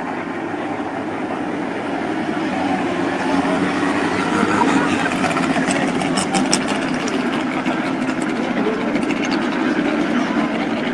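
Several speedcar engines running as the pack circles the dirt oval, getting louder as the cars come closer, with a run of sharp crackles about six seconds in.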